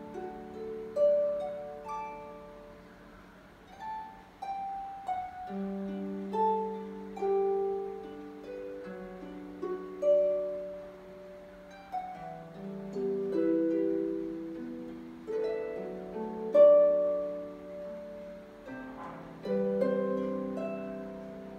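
Solo concert harp playing a slow melody: plucked notes ring and fade one after another over low bass notes that sustain for several seconds.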